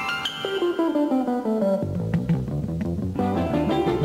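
Acoustic guitar, piano and double bass playing scales in unison: a stepwise run descending over the first couple of seconds, low notes in the middle, then climbing again near the end.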